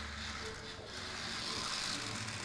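Whir of a small radio-controlled toy car's electric motor and gears as it drives, growing stronger toward the end.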